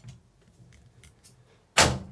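Wooden louvred door being unlatched and pushed open: a few faint clicks, then a sharp wooden knock about three-quarters of the way through.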